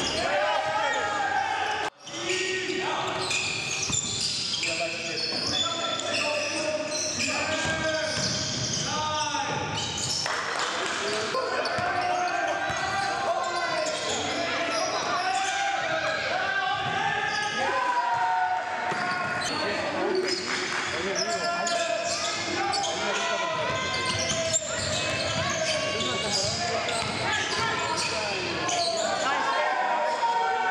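A basketball bouncing on a hardwood gym floor amid players' voices calling out, echoing in a large hall, with a brief drop-out about two seconds in.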